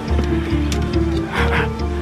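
Tense film score with held tones over a pulsing bass beat a little over twice a second. A short strained vocal sound from a man comes about a second and a half in.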